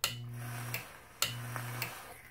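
A homemade 120-volt AC e-cigarette fired twice. Each time, a 24-volt AC relay clicks in and a steady mains hum from the relay and transformer runs for under a second together with the hiss of the coil vaporising liquid, then the relay clicks off.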